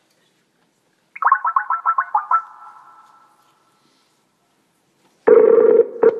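A ringing trill of about nine quick pulses lasting just over a second, fading out. A few seconds later comes a short, loud burst with a steady hum in it.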